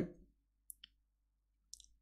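Near silence broken by a few faint, brief clicks: two around the middle and a small cluster shortly before the end.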